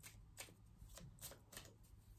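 A tarot deck being shuffled by hand: a few faint, sharp card flicks, about five in two seconds.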